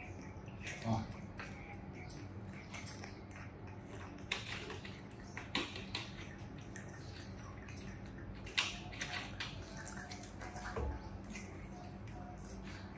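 Young monkeys sipping juice from small glass cups, with scattered quiet sips and light clicks of glass every second or two.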